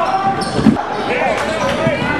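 Sneakers squeaking on a hardwood gym floor in short rising-and-falling chirps, with a basketball bouncing; the loudest knock comes about two-thirds of a second in.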